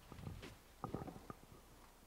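A few faint, scattered knocks and thumps in a quiet hall, from people moving in the audience.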